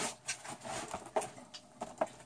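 A few light, irregular clicks and taps on a wire cage as pet rats clamber about on the bars.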